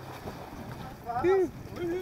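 Two short wordless calls from a man's voice, the first about a second in and the second near the end, over steady wind and sea noise on an open boat.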